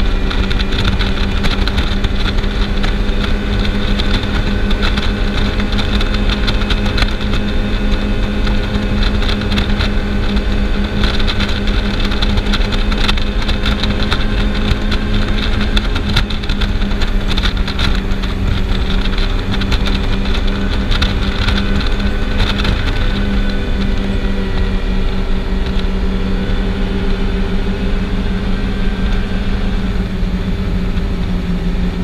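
Race boat's engines running at high speed, a loud, steady drone over a constant rushing noise.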